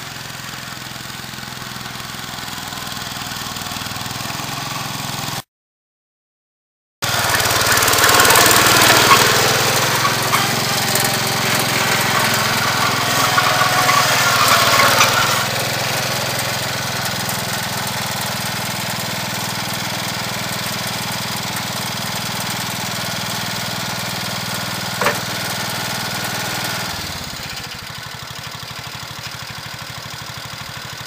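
Kohler K-241A 10 hp single-cylinder engine of a Cub Cadet 107 garden tractor running under load while plowing snow. After a brief gap of silence about five seconds in, it comes back louder, with the plow blade scraping snow across pavement for several seconds. There is one sharp click near 25 s, and near the end the engine drops to a steady idle.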